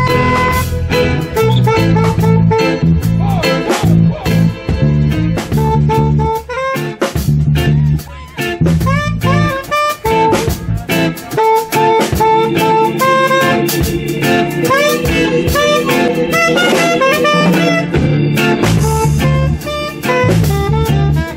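Live jazz-reggae band playing: a saxophone takes a melodic line of many short and held notes over drum kit, guitar and keyboard, with a steady low rhythmic pulse underneath.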